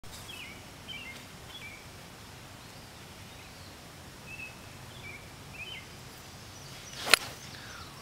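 A golf club striking the ball from a sand bunker: one sharp crack about seven seconds in, the ball caught clean rather than with sand. Birds chirp on and off before it.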